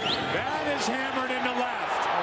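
Stadium crowd noise swelling in reaction to a home-run swing, with a man's voice calling out over it and a couple of sharp short cracks or claps.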